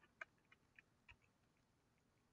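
A few faint computer-keyboard keystrokes: about four short clicks roughly a third of a second apart in the first second, then a couple of fainter ticks.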